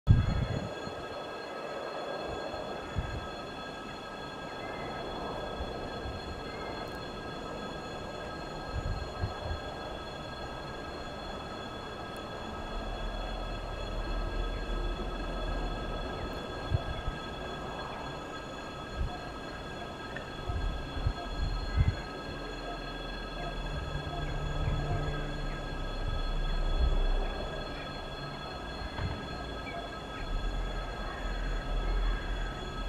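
A coupled set of VL10U and VL11.8 DC electric locomotives approaching at a distance: a low rumble with occasional knocks, swelling in stretches and loudest near the end.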